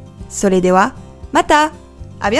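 Speech only, over steady background music: a voice speaks two short phrases, the first about half a second in and the second about a second and a half in.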